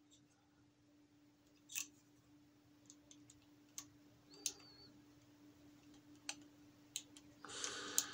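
Light, scattered clicks and taps of small metal parts being handled as a toothed aluminium timing pulley is worked into place beside a stepper motor's shaft pulley, with a brief rustle near the end.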